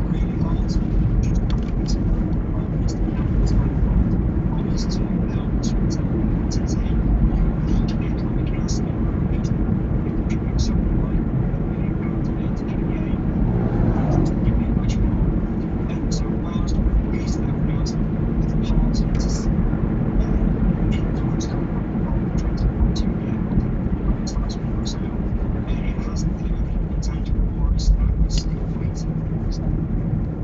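Steady engine and road rumble inside a moving taxi's cabin, picked up by a dashcam microphone, with scattered small clicks throughout.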